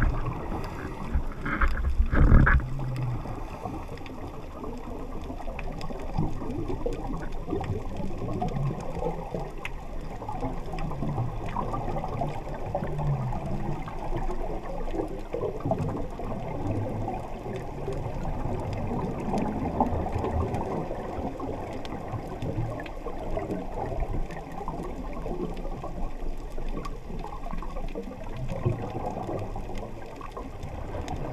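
Scuba diver's regulator breathing and exhaust bubbles heard underwater through a camera housing: a muffled bubbling rush that swells and eases every few seconds. A loud knock comes about two seconds in.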